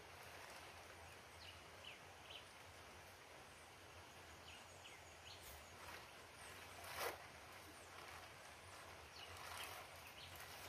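Near silence: faint rural outdoor ambience with a few short, scattered bird chirps and one brief knock about seven seconds in.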